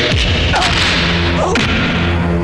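Fight sound effects: three sharp whooshing swishes of a swung stick and blows, at the start, about half a second in and about a second and a half in, over held background music tones.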